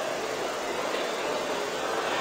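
Steady, even background hiss with no distinct events: the room tone or recording noise heard in a pause between spoken sentences.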